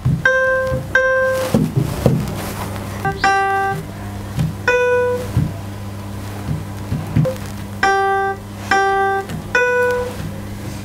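Single piano-like notes from a laptop's virtual piano, triggered by touching bananas wired to a Makey Makey controller. About seven notes are picked out one at a time at two or three pitches, with a longer pause in the middle, over a steady low hum.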